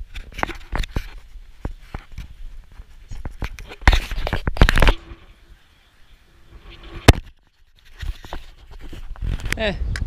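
Handling noise from an action camera in a hard plastic waterproof housing: scattered scrapes, rubs and knocks as it is moved about and set down, with one sharp click about seven seconds in, the loudest sound.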